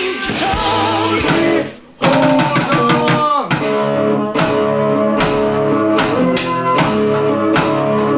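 Rock music: a live rock band with a singer, cut off abruptly just under two seconds in; then electric guitar and keyboard playing held chords over a steady beat, with a falling pitch bend about a second after the cut.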